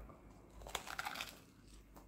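Crisp crunching of a bite into a thin, bubbly fried chiacchiera (Italian carnival pastry), a short cluster of crackles about a second in, the sign of a crisp fry.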